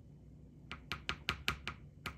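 Wooden spoon knocking against a wooden bowl while mixing yogurt into cooked oatmeal: a quick, even run of about five knocks a second, starting a little under a second in.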